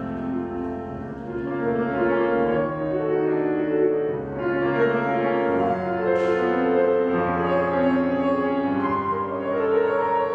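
Solo grand piano playing a slow classical piece: held chords, with a melody line and bass notes that change every second or so.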